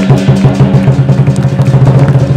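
Chinese lion dance drum beaten in a fast, steady roll of about ten strokes a second, with sharp higher strikes clattering over it.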